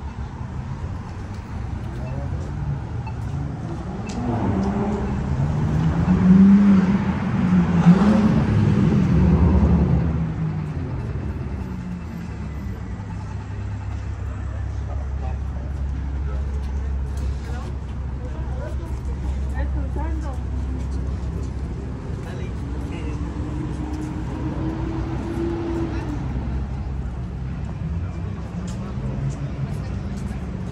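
Street traffic: a car engine passes loudly, its pitch rising and falling, about five to ten seconds in, followed by a low steady engine hum and another engine rising in pitch near the end.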